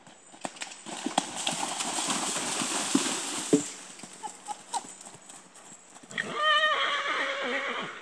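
A horse cantering through a shallow ford, its legs splashing loudly through the water for the first few seconds, then its hoofbeats thudding on grass. Near the end comes a short call with a wavering pitch, a whinny.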